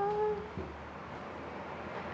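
A person's drawn-out hesitation sound, "uhhh", held on one pitch for about half a second before trailing off.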